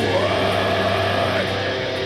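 Live heavy-metal band: distorted electric guitars and bass ring out a held chord with no drums, one high note bending up and slowly back down.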